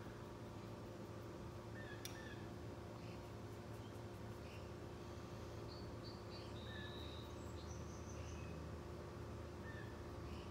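Quiet room tone: a steady low hum with a few faint, short high-pitched chirps scattered through it.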